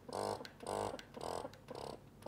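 Portable electric breast pump running, its motor whirring in short, even suction cycles about two a second.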